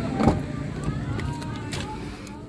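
Car engine idling with a steady low hum, with a knock about a quarter second in and a few lighter clicks as the driver's door is opened and someone climbs in.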